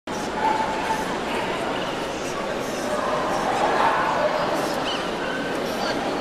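Steady crowd chatter with dogs barking and yipping now and then among it.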